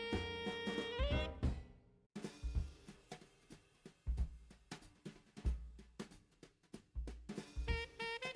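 Background music: a held melody line for about the first second and a half, then a drum-kit break of kick and snare hits alone, with the melody returning near the end.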